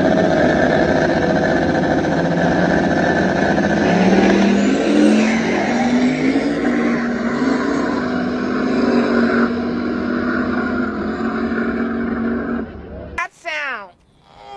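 Drag-race car engine at full throttle on a run down the strip. Its pitch climbs from about four seconds in and stays high, then cuts off suddenly near the end.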